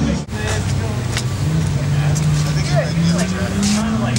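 A car engine idling steadily, rising slightly in pitch near the end, with people talking around it.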